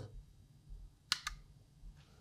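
Two short, sharp clicks close together a little over a second in, against faint room tone.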